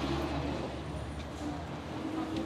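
City street traffic: a steady low drone of road vehicles under the general noise of a busy pavement.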